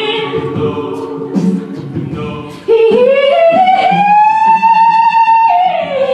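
A cappella group singing in harmony; about two and a half seconds in a woman's solo voice comes in loud, slides up and holds one long high note over the group, dropping back down near the end.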